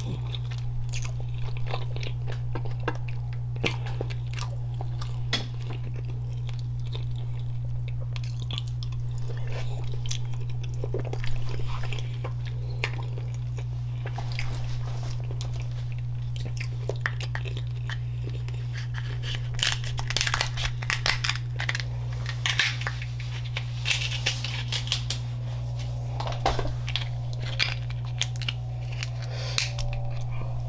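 Close-miked eating of a king crab seafood boil: chewing and biting with many short clicks and crackles as crab meat is picked from the shell, busiest in the second half. A steady low hum runs underneath.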